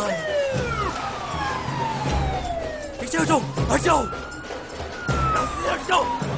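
Police siren wailing: its pitch slides slowly down, then rises and falls again. Under it runs a film score with a pulsing low beat, and a burst of sharp sounds comes about three to four seconds in.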